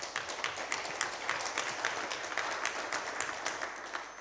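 A small audience applauding: many scattered hand claps that thin out near the end.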